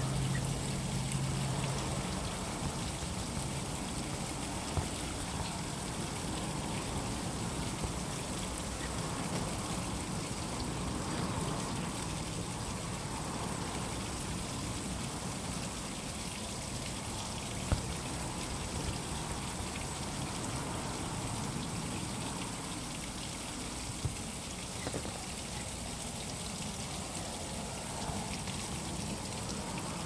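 Soapy kitchen sponge scrubbing the wet surface and edges of an acrylic-painted canvas, a steady wet rubbing with water dripping. A few small knocks along the way.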